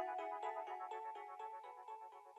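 Outro of a hip-hop beat: a quick, repeating melody of high notes with no bass or drums, fading out.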